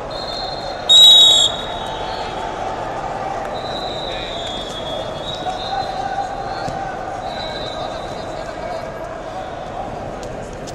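A referee's whistle gives one short, loud blast about a second in, over the steady chatter of a crowd in a large hall. Fainter whistle tones sound twice more later.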